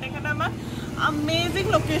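A woman talking, over a low steady hum.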